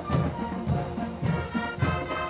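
High school marching band playing a brass piece, with sustained horn chords over a steady drum beat of a little under two beats a second.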